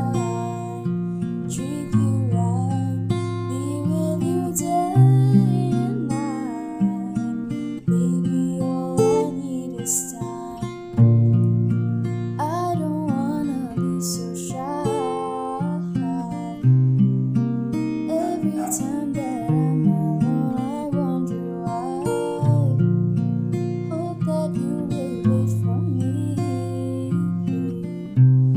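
A young woman singing a slow pop ballad over a strummed acoustic guitar accompaniment.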